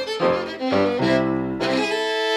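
Fiddle playing an old-time dance tune in C with Kawai digital piano accompaniment. Near the end the tune closes on a held final chord.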